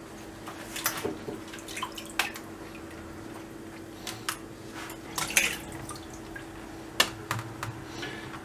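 A water-dampened sheet of dry yufka being laid and pressed down by hand in a round metal baking tray: scattered soft crackles, taps and drips, over a faint steady hum.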